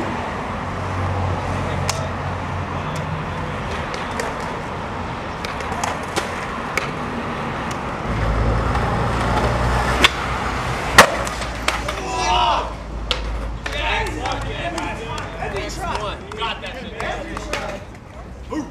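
Skateboard wheels rolling on concrete, a snap of the board near ten seconds in, then a sharp loud crack of the board hitting the ground about a second later, followed by people's voices.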